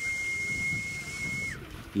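A single high whistle held on one steady note for about a second and a half, with a short rise at the start and a drop at the end, over faint pigeon cooing.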